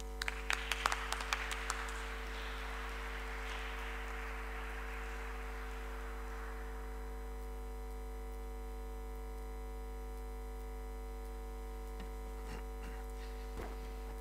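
Audience applause, a few sharp claps that spread into a wash and fade out after about six seconds. A steady electrical mains hum from the sound system runs underneath.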